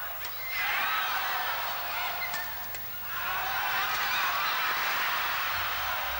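Large crowd cheering and shouting, many high voices at once, in two surges with a brief lull in between.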